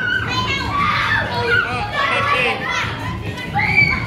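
A group of children shouting and calling out at once as they play, many high voices overlapping with no break.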